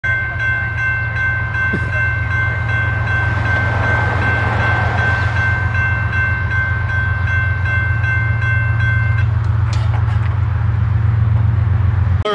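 Railroad grade-crossing bell ringing steadily as the crossing gates lower, falling silent about nine seconds in. Under it runs a steady low rumble.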